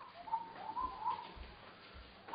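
Faint whistling by a person, a few short notes sliding upward in pitch.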